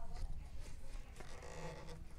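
Faint rubbing and scraping of hands handling a ukulele at its headstock, with no strings strummed.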